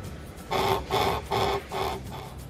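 Restaurant guest pager buzzing in four short, evenly spaced pulses, about two and a half a second: the call that the noodle-bar order is ready to collect.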